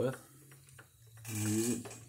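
A small model steam engine slowly turning a Microcosm P70 brass mini impeller pump by a round belt, with a steady light clicking. The pump is running dry, not connected to any water.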